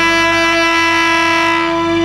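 Tenor saxophone holding one long, steady note of a slow trot ballad melody over a recorded backing track with a low bass line.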